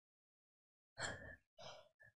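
Near silence, then about a second in a woman's short audible breath into a close microphone, followed by a fainter second breath.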